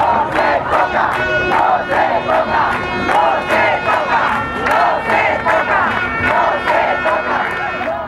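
A crowd of protesters shouting and chanting together, many voices at once.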